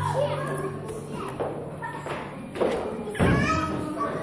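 Young children shouting and playing in a pillow fight, with soft thuds of pillows striking; the loudest thud comes a little after three seconds in.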